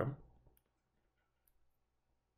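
Near silence, broken by a few faint clicks about a second and a half in, from a stylus tapping on a tablet while handwriting.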